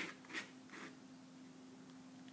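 Metal palette knife scraping and smearing stiff, half-dried oil paint on a canvas strip: three short faint strokes about a second in total, then the scraping stops.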